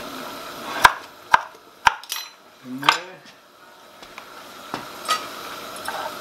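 Kitchen knife chopping a broccoli stalk on a wooden chopping board: three sharp chops about half a second apart, followed by lighter handling knocks.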